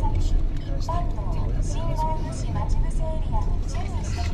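Steady low road and engine rumble heard inside the cabin of a moving car, with an indistinct voice over it.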